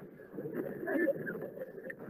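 Faint, indistinct voices over low background noise, growing a little louder about a second in.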